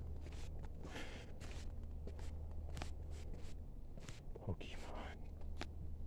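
Footsteps on a hard, smooth floor, with scattered short knocks, over a steady low hum.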